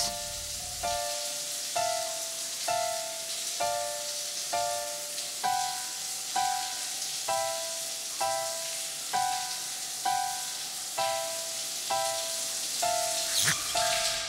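Shower water running as a steady hiss. Over it, background music plays a single note about once a second, with the pitch stepping up partway through.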